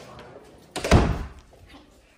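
A door shutting with one loud thud about a second in.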